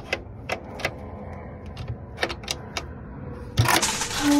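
Sharp clicks and knocks from a chicken coop's hinged rear access door, a corrugated panel on a wooden frame, being unlatched and handled, with a louder clatter near the end as the panel swings open on its bottom hinges.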